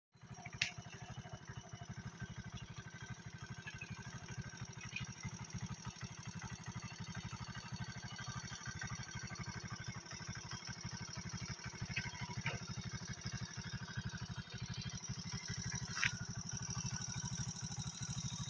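A small engine idling steadily, a fast, even putter that runs on without change, with a couple of faint clicks.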